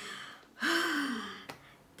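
A woman's long, breathy, voiced sigh, falling in pitch: a nervous exhale. A short click follows about a second and a half in.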